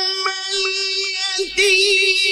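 A man's voice chanting Quran recitation (tilawat) in a long, drawn-out melodic note, held steady, then breaking briefly about a second and a half in before resuming with a wavering ornament.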